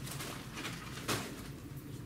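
Paper rustling as a printed sheet is handled, with a couple of short brushing sounds over a steady low room hum.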